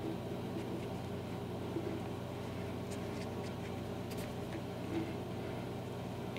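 Steady low hum of room background, with a few faint soft clicks and rustles from hands pulling a waxed-thread knot tight on a suede moccasin.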